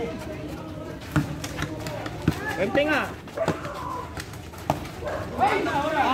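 Men shouting short calls across a small-sided football game, the loudest yell rising and falling in pitch near the end, with a few sharp thuds of the ball being kicked.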